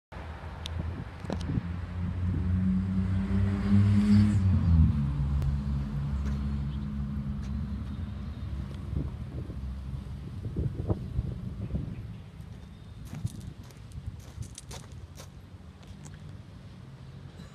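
A motor vehicle's engine running up, rising in pitch and growing louder, then dropping back in pitch about five seconds in and fading away over the following seconds. A few light clicks are heard near the end.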